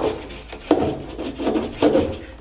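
Handling noise from a surfboard and its leash: three short knocks and rubs, each fading quickly.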